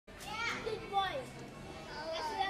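A young child's high-pitched voice: two or three short vocal sounds with gliding pitch, wordless babbling rather than clear words.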